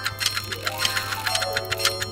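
Rapid clock-ticking sound effect over a short run of musical notes that step down and then climb back up.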